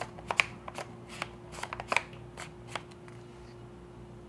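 Small sharp clicks and taps of a camera lens being handled and fitted onto a mirrorless camera body, irregular and about a dozen in the first three seconds, then stopping.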